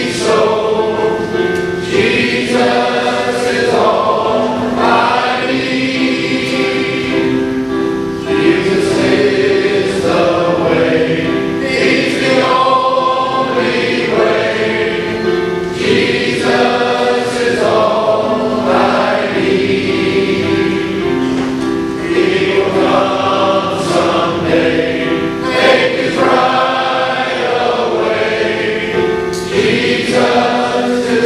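A large men's choir singing in harmony, with several voice parts holding chords together through continuous phrases.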